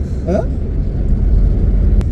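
Steady low rumble of a moving car heard from inside the cabin, engine and road noise, growing a little louder in the second half. A short spoken 'hah?' comes just after the start.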